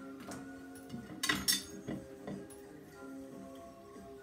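Background music with sustained tones, over which a tool clinks and scrapes a few times against a plate as pigment is mixed into oil varnish. The loudest clinks come a little over a second in.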